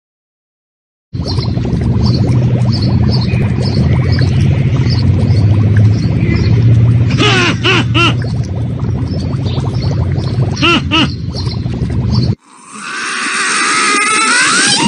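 Raccoon eating dry kibble from a bowl: steady chewing and crunching over a low hum, broken twice by quick runs of three short high squeaks. Near the end it cuts off suddenly and a wavering cry that glides in pitch begins.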